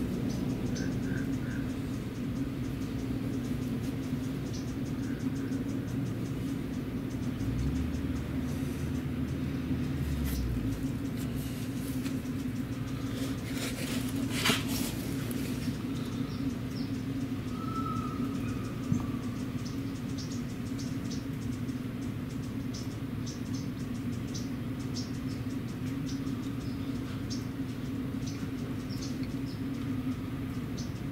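Steady low machine hum, with a deeper rumble for a few seconds early on, scattered light clicks, and one sharp knock about halfway through.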